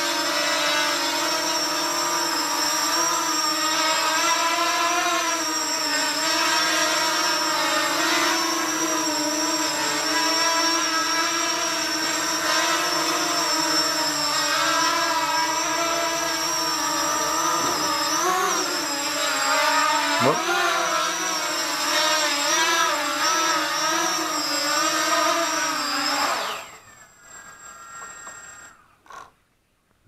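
Flying 3D X6 quadcopter's motors and propellers whining in flight, several tones rising and falling together as the throttle changes. A little before the end the motors wind down with a falling pitch as it lands.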